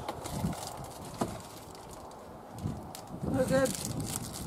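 Faint low murmuring voices and a few soft clicks over quiet outdoor background, then a short spoken word near the end.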